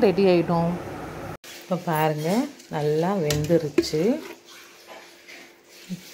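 A woman's voice speaking, broken off briefly about a second and a half in, then going quieter over the last two seconds.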